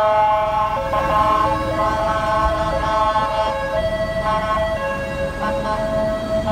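Ambulance siren sounding a two-tone pattern, stepping back and forth between a higher and a lower pitch every half second to a second, as the ambulance passes and pulls away.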